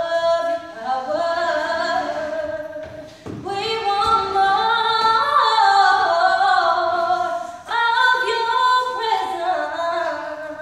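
Two women singing a cappella, unaccompanied, in three phrases with short breath breaks about three seconds in and near eight seconds.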